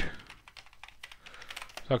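Typing on a computer keyboard: a quick run of about ten key clicks as a word is typed out. A man's voice starts again near the end.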